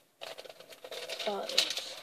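Plastic packaging crinkling and rustling as a large round picture hand fan in its plastic sleeve is handled and moved, a dense run of quick irregular crackles.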